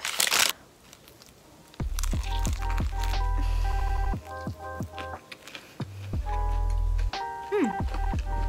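A short crunchy bite into a chicken burger right at the start, then background music with a deep bass line and held synth notes from about two seconds in.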